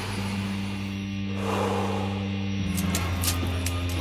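A low, steady musical drone with a deep hum at its base. It shifts in tone a little past halfway, and a few faint clicks come near the end.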